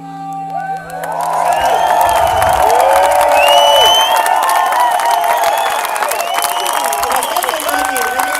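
Large outdoor audience cheering and applauding at the end of a song, the cheers swelling about a second in as the last electric guitar chord dies away.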